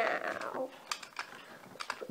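A few sharp, light clicks and taps from objects being handled on a tabletop, about five in all, with a short voice sound trailing off at the very start.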